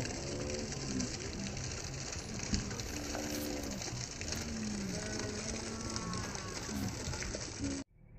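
Steady splashing of a thin stream of water pouring off the end of a water slide into a river pool, with faint distant voices behind it.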